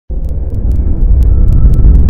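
Deep, loud rumble of a cinematic intro sound effect that starts abruptly just after the opening, with faint scattered ticks over it.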